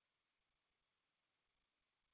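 Near silence: only a faint, steady hiss on the stream's audio.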